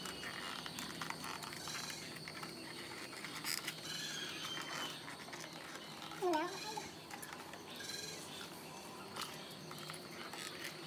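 Light clicks and rustles of 3D puzzle pieces being handled and slotted together, with one short wavering voice sound about six seconds in.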